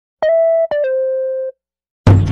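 A short electronic jingle of three descending beep tones: a higher note, a brief slightly lower one, then a lower note held for about two-thirds of a second before cutting off.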